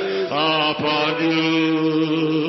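A voice singing in worship, a short bending phrase and then one long held note from about half a second in.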